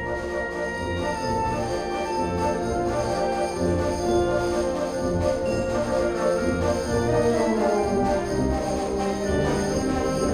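A high school symphonic wind band playing in full: held brass and woodwind chords over a pulsing low bass line, in a gymnasium's reverberant acoustic.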